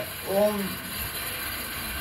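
A man's voice says one short word about half a second in. After it comes a pause filled with steady background noise with faint irregular low clicks, from no identifiable source.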